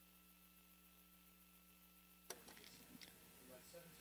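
Near silence: a faint steady electrical hum on the broadcast audio, then a single click a little past halfway, after which faint background noise comes in.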